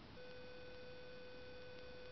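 A steady, unwavering tone, a single pitch with several higher overtones, starts about a fifth of a second in and holds unchanged.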